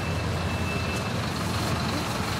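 Street traffic: car engines running in a steady low rumble as cars and taxis move slowly along a cobblestone street.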